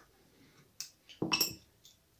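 A small metal tool clinking against the metal and plastic parts of a Contender Big Game Ocean baitcasting reel as it is taken apart by hand: one light click a little under a second in, then a louder cluster of clinks with a handling knock about a second and a half in.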